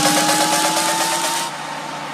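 Electronic dance music build-up with no beat: a slowly rising synth tone over a loud hiss of noise. The tone cuts off about one and a half seconds in, leaving the hiss alone and quieter.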